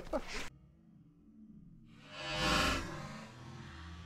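Speech stops about half a second in; after a quiet gap, a short swell of background music rises in the middle and fades away.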